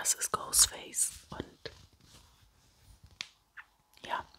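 A man whispering close to the microphone in short breathy phrases, with pauses.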